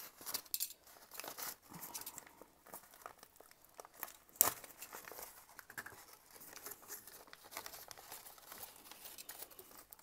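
Crumpled packing paper and kraft paper rustling and crinkling as hands unwrap a packed plant, with one sharp snap about four and a half seconds in.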